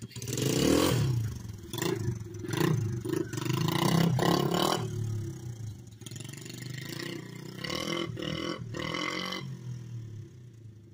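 Mini bike's Honda TRX90 four-stroke single-cylinder engine revving up and down in several surges under throttle as the bike rides away, growing fainter after about five seconds.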